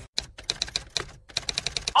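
Typewriter keys being struck in a quick, uneven run of keystrokes, with a short pause about a second in.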